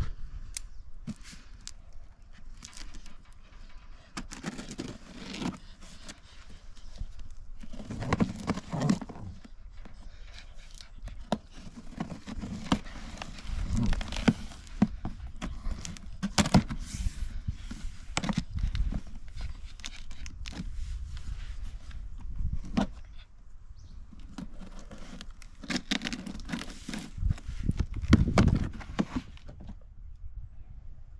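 Knife slitting the packing tape on a cardboard box, with irregular scrapes, clicks and rustling of the cardboard as the box is handled and its flaps are worked open.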